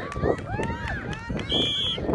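Referee's whistle: one steady, shrill blast starting about a second and a half in and still sounding at the end, the final whistle ending the match. Voices are heard across the field before it.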